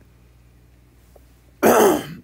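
A man clears his throat once, a short loud burst near the end, after about a second and a half of quiet room tone.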